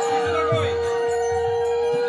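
A conch shell (shankha) blown in one long steady note, over women's wavering ululation (ulu) and low drum beats.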